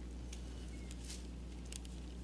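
Faint, steady low electrical hum, with a few soft brief clicks and rustles.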